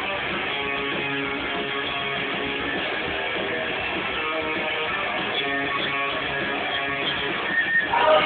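Rock band playing live, led by strummed electric guitar, with a muffled sound lacking treble. A few louder hits come near the end.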